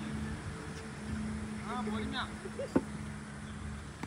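Faint voices of players calling across the ground over a steady low hum, with one sharp knock about three-quarters of the way through.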